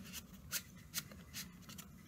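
Paper word wheel in a picture book being turned by hand: a few faint ticks and rubs, roughly every half second, as the printed disc is rotated to the next word.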